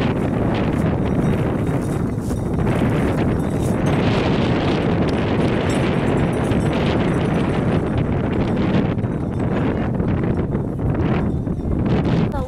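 Loud, steady wind buffeting the microphone over the rumble of a herd of Camargue bulls running across dry, dusty ground.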